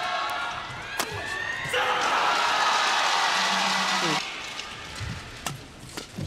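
Sharp racket strikes on a shuttlecock during a badminton doubles rally, then an arena crowd cheering and shouting for about two and a half seconds once the point is won. A single racket hit comes near the end as the next rally starts.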